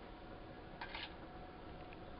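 A metal fork scraping and clicking against a bowl as mashed banana is scraped off it, with a short clatter about a second in, over a faint steady hum.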